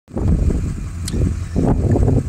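Low, uneven rumble of a car with its engine running, heard from the car.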